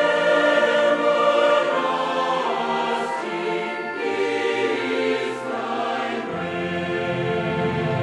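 Choral music: voices singing sustained chords that shift every second or two.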